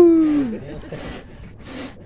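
A man's long, drawn-out exclamation, sliding down in pitch and fading out about half a second in, as a hooked fish is swung up out of the water.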